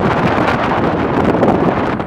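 Loud, steady rush of wind on a phone's microphone, filmed from a moving vehicle.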